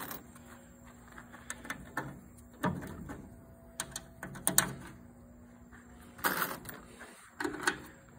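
Scattered light clicks and taps as pop rivets are handled and pushed into drilled holes in the Defender's rear panel, with a few louder knocks.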